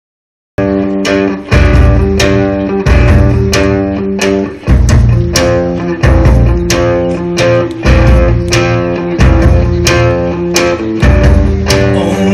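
Live band playing a song's instrumental intro: guitar chords struck in a steady rhythm over bass, with the chord changing every second or two. The music cuts in abruptly about half a second in.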